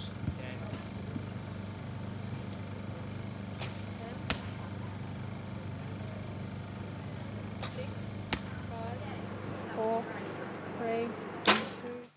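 A compound bow being shot: one sharp crack of the release near the end, after a long stretch of steady low background hum.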